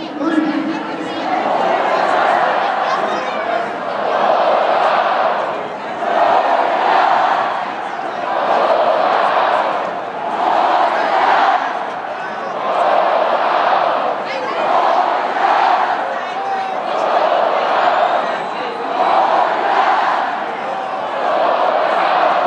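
Huge football stadium crowd chanting in unison, a massed shout that swells and fades about every two seconds.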